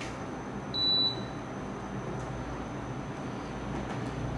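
Air conditioner giving one short, high beep about a second in as its temperature setting is turned down, over the steady hiss and hum of the unit running.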